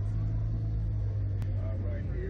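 Steady low mechanical hum, with a single sharp click about one and a half seconds in and faint voices near the end.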